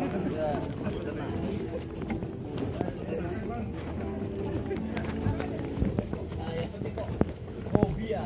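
Footsteps of a group walking on a wooden boardwalk, with indistinct chatter of several people's voices.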